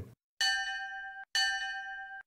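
Bell chime sound effect struck twice, about a second apart. Each strike rings and fades, then cuts off abruptly.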